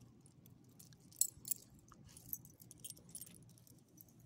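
Small metal dog collar tags jingling and clinking irregularly as the dogs move, with two louder clinks about a second and a half in.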